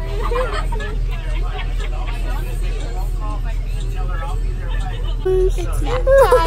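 School bus running on the road, a steady low rumble, under the chatter of many passengers' voices.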